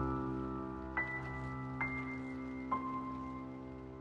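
Steinberg Materials: Wood & Water "Rain Piano on Tape" sample patch: a held piano chord with three single higher notes played about a second apart, the last lower than the first two, over a faint rain texture, slowly dying away.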